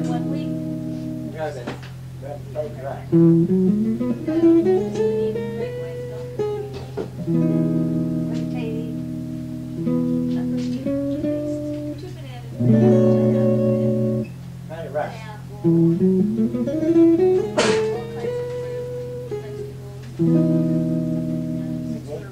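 Guitar playing held chords and a rising run of single notes, the same phrase coming round twice, over a steady low hum.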